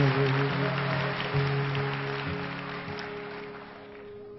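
Acoustic guitar accompaniment between sung lines of a slow folk song: a chord rings on and slowly fades away.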